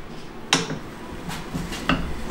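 Steel tyre lever knocking against an alloy wheel rim on a tyre-changing machine while the bead of an old, stiff tyre is levered over the rim: one sharp clank about half a second in, then two lighter clicks near the end.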